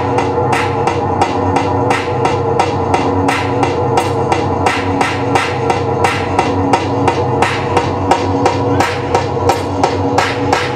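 Live electronic music: a steady droning chord of several held tones under a sharp percussive hit repeating evenly about three times a second.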